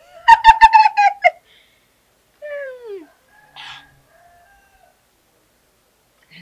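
A rooster crows loudly once near the start, a rough, pulsing call about a second long. A shorter call falling in pitch follows a little later.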